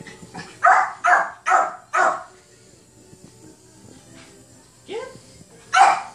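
A Yorkshire terrier barking: four sharp barks in quick succession about a second in, then two more near the end.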